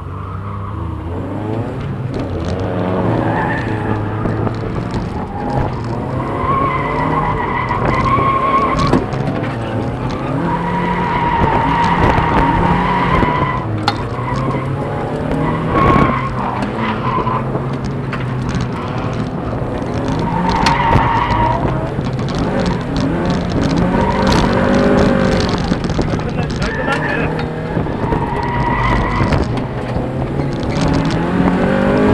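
A sports car's engine revving up and down as it is driven sideways through drifts, heard from inside the open cockpit, with the tyres squealing in repeated bursts of a second or two.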